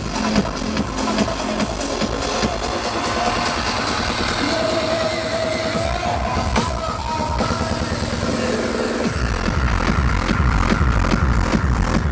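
Electronic dance music from a DJ set, played loud over a festival sound system and heard from within the crowd. The kick and bass drop out for a breakdown, then come back in strongly about nine seconds in.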